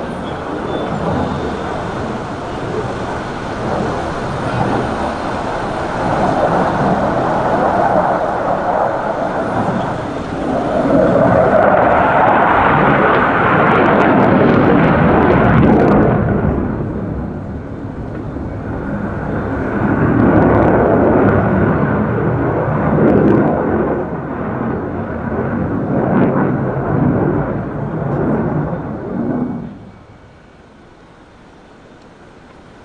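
Jet roar of the JF-17 Thunder's single Klimov RD-93 turbofan as the fighter flies display manoeuvres overhead. It swells to its loudest about halfway through, eases briefly, then builds again.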